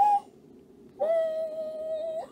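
A woman's voice: a brief sound at the very start, then about a second in one steady high note held for just over a second, an excited wordless hum of delight at the bookmark she has pulled.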